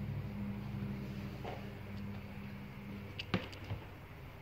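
Steady low electrical hum from a Samsung QN65Q60R TV under repair. The hum drops away a little after three seconds, followed by a sharp click and a fainter second click as the set cycles and comes back on, part of its fault of repeatedly turning on and off.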